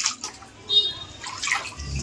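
Water pouring and splashing into a tub already full of water, coming in uneven surges.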